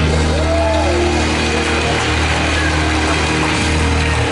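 Loud live gospel music from a church band with choir, carried by long held bass notes, with a few sliding sung or played notes above.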